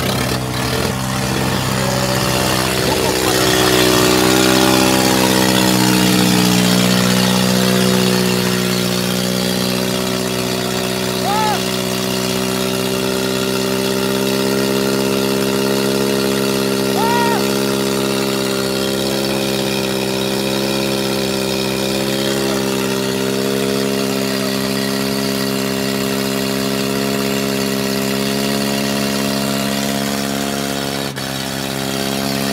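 Mahindra 575 DI tractors' four-cylinder diesel engines running hard at full throttle, chained together and pulling against each other. The engine note sags over the first several seconds as they load down, then holds steady.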